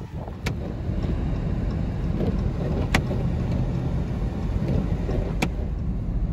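Ram 5500 trash truck driving on a snow-covered road: a steady rumble of engine and tyres, with three sharp ticks at even intervals.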